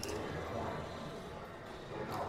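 Opening of a rap music video playing back: a quiet, steady, hazy intro sound with no clear beat yet.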